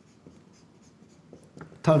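Marker writing on a whiteboard: a run of faint, short strokes. A man's voice starts near the end.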